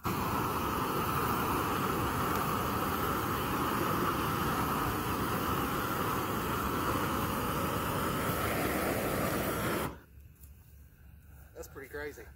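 GrillGun high-power propane torch firing at full flame: a steady, loud rushing hiss that cuts off abruptly about ten seconds in as the torch drops back to a small flame.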